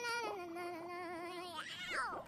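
High-pitched, cartoon-like sung voice in a channel intro jingle, dropping to one long wavering note, with a quick rising-and-falling vocal glide near the end.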